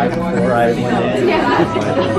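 Indistinct chatter: people's voices talking over one another, with no clear words.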